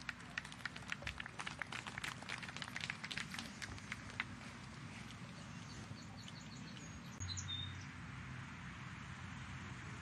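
Light scattered applause from a small golf gallery: a few people clapping for about four seconds, then dying away. Faint outdoor hiss follows, with a few short high bird chirps.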